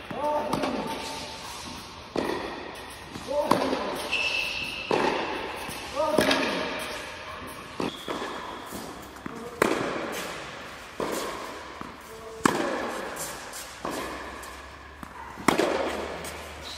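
Tennis ball struck by rackets and bouncing on a hard indoor court in a steady rally, a sharp hit or bounce every second or so, each one echoing in the large hall. Short squeaks of tennis shoes on the court surface come between the hits.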